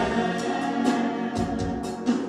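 A small group of women singing gospel music together into microphones, with a steady beat of about two strikes a second behind them.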